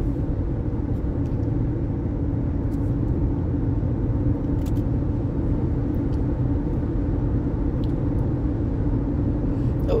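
Steady road and engine noise inside the cabin of a car cruising at highway speed: an even low rumble and tyre hiss.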